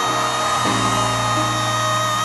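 Music: a countertenor holds one long high sung note over sustained band chords, the chord underneath changing about two-thirds of a second in.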